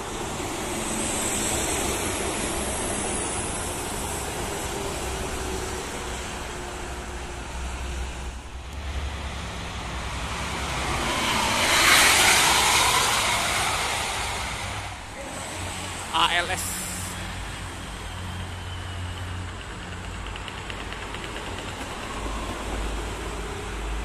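Steady highway traffic, with a coach bus passing close at speed. Its engine and tyre noise rise to a peak about halfway through and fade away. A short, loud pitched sound follows a few seconds later.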